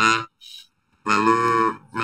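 A man's voice speaking through an electronic voice disguise that gives it a strange, instrument-like tone, with a short pause about half a second in before he goes on.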